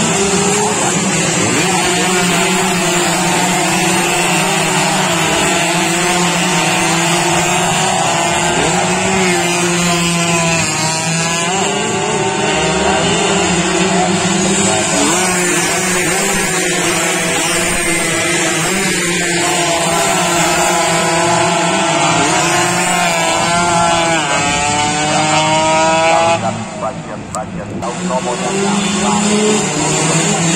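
Yamaha F1ZR two-stroke underbone racing motorcycles running flat out on a street circuit, several engines at once, their pitch sweeping up and down as they accelerate and pass.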